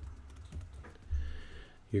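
A few light keystrokes on a computer keyboard, typing a short number into a software field, with a low dull bump about a second in.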